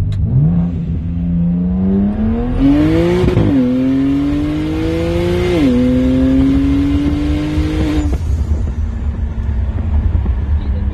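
Single-turbo BMW 335i's N54 inline-six pulling hard through the gears: the engine note climbs, drops at an upshift about three and a half seconds in and again about five and a half seconds in, with a rushing hiss over the hardest part of the pull. It falls away a little after eight seconds as the throttle closes.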